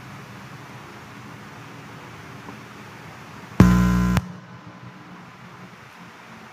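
Steady faint hiss, broken about three and a half seconds in by a loud electronic buzz that lasts about half a second and cuts off suddenly.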